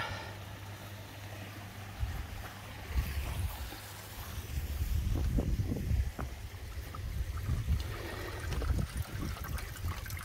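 Water trickling as a Nexus 200 koi pond filter drains through its opened waste valve, over a steady low hum, with irregular low thumps from about two seconds in.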